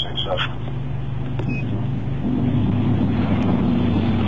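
Steady low hum of an idling vehicle engine, with a faint voice over it.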